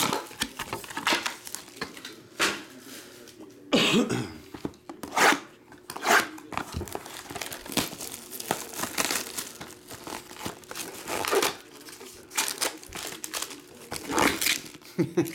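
Cellophane shrink-wrap on a trading card box crinkling and tearing as it is pulled off by hand, in irregular crackling bursts.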